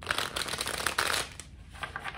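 A deck of tarot cards being shuffled by hand: a dense papery rustle for about the first second, then a few faint clicks.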